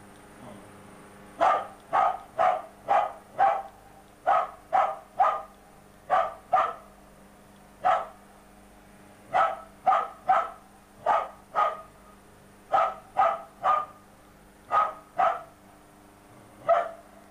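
A dog barking at the shelling, about twenty sharp barks in runs of two to five, roughly two a second, starting about a second and a half in.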